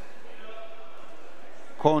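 Steady background noise of a wrestling hall with faint distant voices during a pause in the commentary; a man's commentary resumes near the end.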